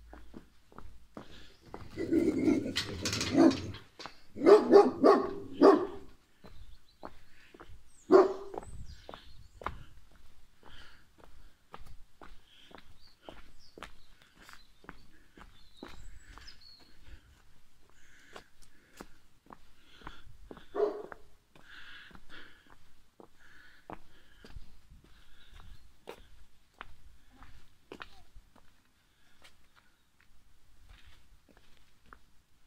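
A dog barking in several loud outbursts in the first eight seconds and once more about twenty seconds in, over steady footsteps on cobblestones.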